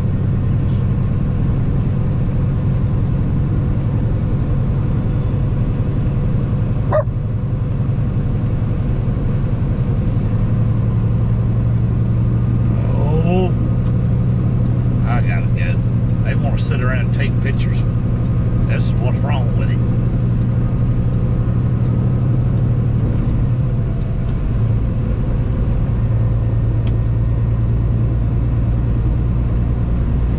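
Steady low drone of a truck's engine and tyres at highway speed, heard from inside the cab, with a single sharp click about seven seconds in.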